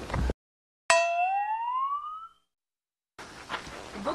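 A comic sound effect added in editing: a struck tone about a second in that slides upward in pitch and fades out over about a second and a half, set between stretches of dead silence.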